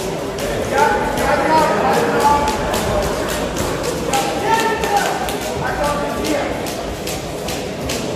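Voices of people at ringside calling out during a boxing bout in a large hall, over a run of short, sharp slaps and thuds of gloved punches and boxers' footwork on the ring canvas.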